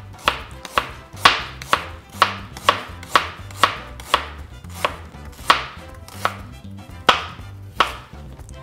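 Chef's knife slicing peeled fresh ginger root into thin rounds, each cut ending in a sharp knock of the blade on the cutting board, about two a second and a little slower near the end.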